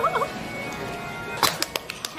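A woman giggling in short high bursts, then a run of quick hand claps starting about one and a half seconds in, the first clap the loudest.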